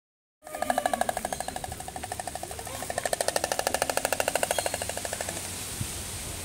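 Oriental stork clattering its bill in a long, rapid wooden rattle that fades out near the end. The clatter is its territorial display, showing that the enclosure is its own.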